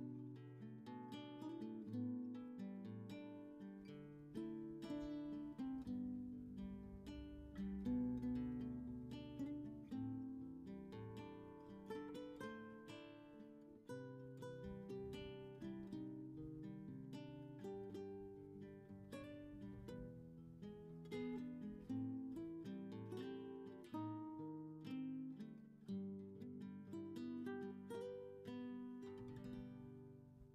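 Background music: acoustic guitar playing a steady stream of plucked notes.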